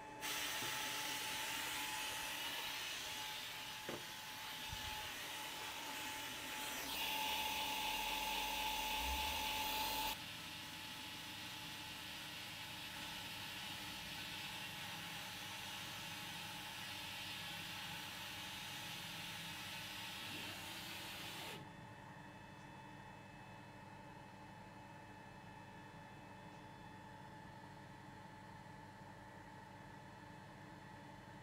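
Longer Ray 5 20W diode laser engraver running an engraving job on stamp rubber: a steady mechanical whirring hiss with a faint steady whine. It gets louder about seven seconds in, drops at about ten seconds, and drops again about two-thirds of the way through.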